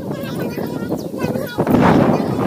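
Children's voices on an open rooftop, then, near the end, a loud rush of wind buffeting the phone's microphone as the camera swings.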